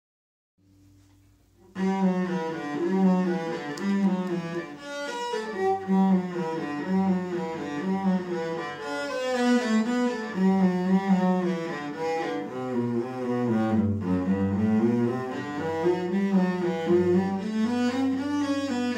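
Solo acoustic cello, bowed, playing a practice étude as a continuous line of notes changing about once or twice a second, beginning about two seconds in.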